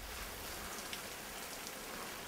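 Garden hose with a spray nozzle spraying water over flowers and leaves: a steady hiss of spray.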